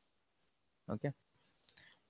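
A man's voice says a single 'okay' about a second in, between quiet pauses, followed by a faint short click near the end.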